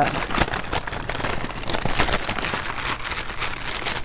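Paper fast-food bags and wrappers crinkling and rustling as they are handled, a dense run of small crackles that is a little louder in the first second.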